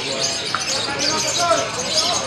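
Lovebirds twittering in a continuous high-pitched chatter, many birds at once, over a crowd of people talking.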